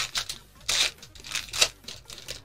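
A foil Pokémon TCG booster pack being torn open and its wrapper crinkled, in a few short rustling bursts.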